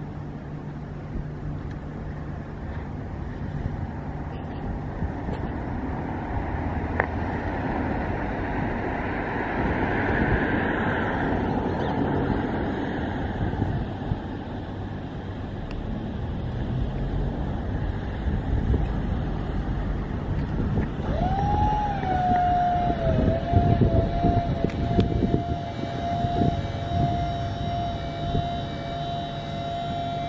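Steady outdoor rumble, then about two-thirds of the way in the electric motor of a Skyjack SJIII-3226 scissor lift starts with a brief rise in pitch and settles into a steady whine.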